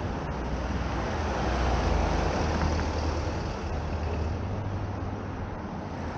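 Road traffic noise from the street alongside, mixed with a low wind rumble on the microphone of a moving bicycle, swelling slightly about two seconds in.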